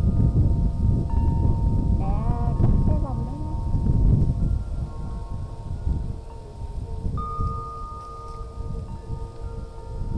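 Wind chime ringing, several clear tones sounding and ringing on at different pitches. Strong low wind rumble on the microphone lies under it.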